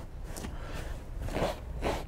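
Rubber pet-hair brush working across cloth seat upholstery to lift embedded dog hair, heard as a few faint, short brushing strokes.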